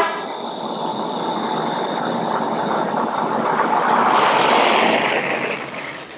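Rushing noise of a passing vehicle that builds to its loudest about four seconds in and then fades away near the end.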